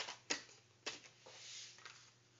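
A sheet of paper being handled and smoothed flat by hand: a few faint crinkles and clicks, then a soft rubbing sweep in the second half.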